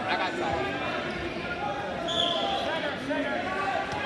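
Spectators and coaches talking and calling out around a wrestling mat in a gymnasium, many voices overlapping, with scattered thuds and one brief high squeak about two seconds in.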